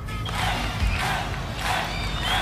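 Radio station ident jingle starting: a crowd-cheer sound effect swelling over music.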